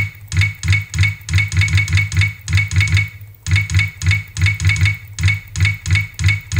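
A rapid series of loud knocks, about four or five a second, each with a deep thump and a brief high ring, breaking off briefly about three seconds in.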